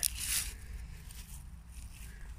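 A brief rustle of dry leaf litter or handling in the first half second, then a quiet outdoor background with a faint low rumble.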